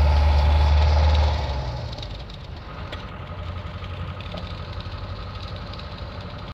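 Engine of a moving vehicle running steadily, heard from on board. A louder low drone stops about a second and a half in, leaving the quieter engine sound.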